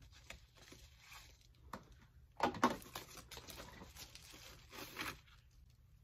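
Faint rustling and crinkling of packaging wrap as a camera is unwrapped and handled, with a louder burst of crinkles about two and a half seconds in.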